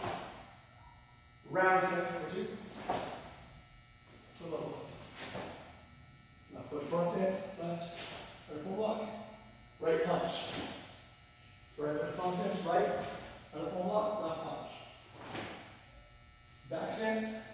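A man's voice in short, separate calls or yells about every one to two seconds, in time with taekwondo form movements. Some calls begin with a sharp thump or snap, such as bare feet landing on the mat or a uniform snapping on a strike.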